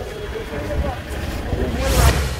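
Outdoor ambience of several people talking in the background over a low traffic rumble, with a transition whoosh rising at the very end.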